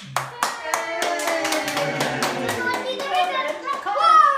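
Hands clapping in a quick, uneven run of sharp claps, with voices over them.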